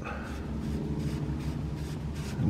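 Faint scratchy rubbing as a hand turns the plastic cap of a Porsche Panamera S's cartridge oil filter housing loose.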